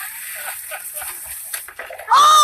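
Steady hiss of water spraying on a backyard inflatable water slide, with faint scattered knocks and rustles.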